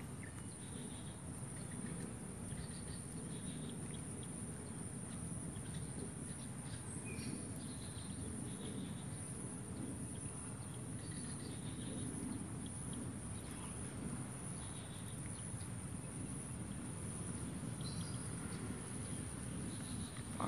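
Swamp ambience: insects chirping in short scattered bursts over a steady high drone and a low background rumble.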